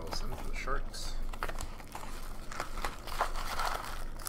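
Trading cards being flipped off a hand-held stack one by one, a run of quick, irregular flicks and soft clicks as card slides over card.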